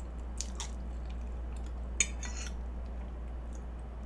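Close-miked chewing of a mouthful of soft cake, with a few faint clicks and one sharp click about halfway through, over a steady low hum.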